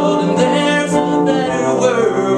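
A man singing a song to his own electric keyboard accompaniment, his voice wavering on a drawn-out note over held keyboard chords.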